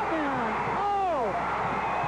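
A sportscaster's excited voice, its pitch falling on each call, over the continuous noise of a stadium crowd as a touchdown catch is made in the end zone.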